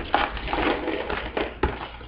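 Close rustling and crackling with a few sharp clicks, handling noise right at the microphone while a small earring is fitted with its back.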